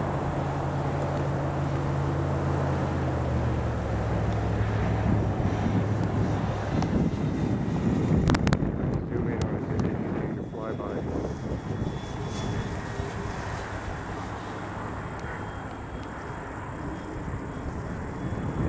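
Twin electric motors and propellers of a FlightLineRC F7F-3 Tigercat scale RC model flying past. The sound builds to its loudest about eight seconds in, then fades as the plane moves away.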